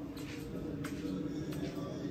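Indistinct ambience of people inside a church: a low murmur of voices under a steady low hum, with a few faint clicks.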